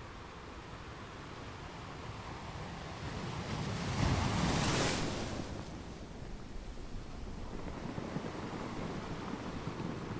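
Wind blowing across the microphone, a steady rush with one stronger gust that swells about four seconds in and dies away by about six.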